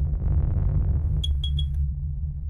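Electronic logo-intro sting: a deep, steady bass drone under a soft swelling hiss, then three quick high pings about a second in.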